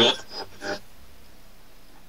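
Belarus-59 valve radiola being tuned on shortwave off a strong station: its loudspeaker drops to a faint, steady low hiss between stations.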